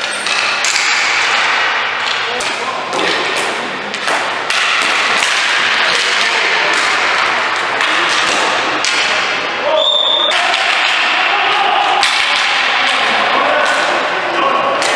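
Ball hockey play in an echoing arena: sticks clacking and the ball knocking off sticks and boards amid players' shouting voices, with a brief high whistle blast about ten seconds in.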